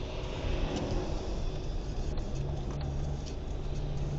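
Car engine and tyre noise heard from inside the cabin while overtaking slow road-marking vehicles; a steady low engine hum grows stronger about two seconds in.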